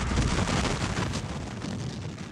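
Sound-effects track of a Civil War artillery barrage: a dense, continuous rumble of cannon fire and explosions, with no single blast standing out.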